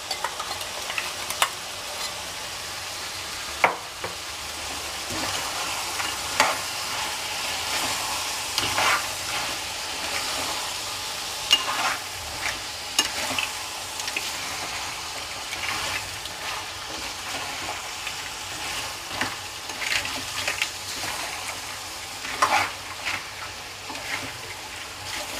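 Crab pieces and masala paste frying in a kadai with a steady sizzle, while a spoon stirs the mix, scraping and clicking against the pan now and then.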